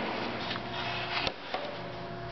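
Two halves of a resawn ebony board being handled and opened out on a steel table-saw top: wood sliding and a couple of light knocks against the metal, over a faint steady hum.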